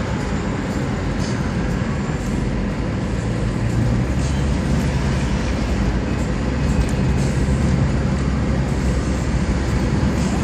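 Car driving along a road, heard from inside the cabin: a steady rumble of engine and tyre noise, with the low hum growing a little louder about four seconds in.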